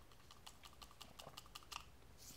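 Near silence with a quick, irregular series of faint clicks: mouth and lip smacks from tasting a pinch of crystallized orange powder off a fingertip.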